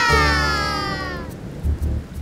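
An animated toddler's long wail, falling steadily in pitch over about a second and a half, set over children's-song music with a low rumble underneath.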